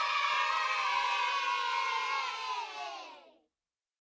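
A group of children cheering together in one long drawn-out shout that fades away about three seconds in.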